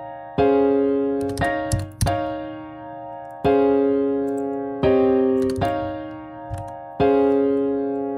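FL Studio's FL Keys virtual piano playing a chord progression from the Scaler plugin. It plays about seven block chords in turn, each struck sharply, then ringing and fading before the next.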